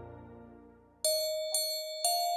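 Marching band music. A held ensemble chord dies away over the first second, then bright, bell-like struck notes enter, two strikes about half a second apart.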